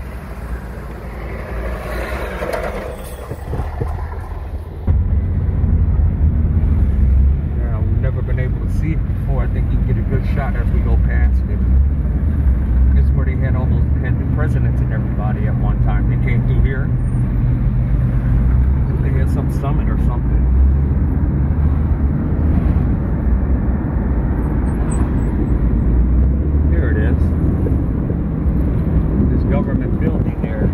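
Car driving, heard from inside the cabin: a steady low rumble of engine and tyres that jumps suddenly louder about five seconds in and stays loud.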